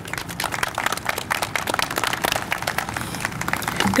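Audience applauding: many quick, overlapping hand claps.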